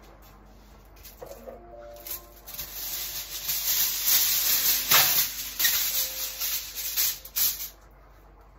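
Aluminium foil being pulled off its roll and handled: a loud crinkling rustle that starts about two seconds in and stops shortly before the end.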